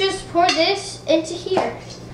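A young girl's voice, high-pitched and rising and falling, for most of the first second and a half, with one short knock about one and a half seconds in.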